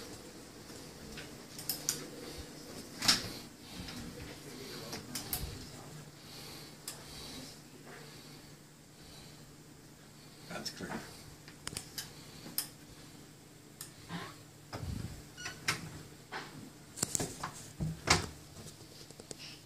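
Scattered light knocks and clicks of footsteps and handling noise in a small room, with a closet door and its contents being handled, over a low steady hum.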